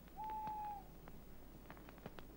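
An owl hoots once, a single steady note lasting under a second, over the sharp crackling and popping of a wood campfire.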